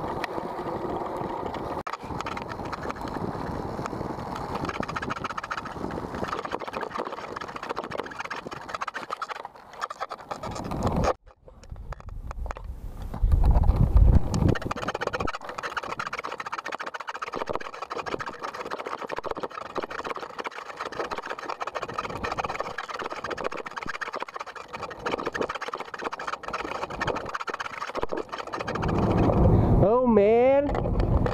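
Inline skate wheels rolling and rattling over a rough, stony road surface, with wind on the microphone. A brief cut to near silence about 11 seconds in is followed by a loud low rumble of wind.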